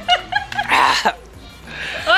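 Excited high-pitched shrieks and laughter from a small group of people, in short bursts, with a louder noisy burst just before a second in, then quieter.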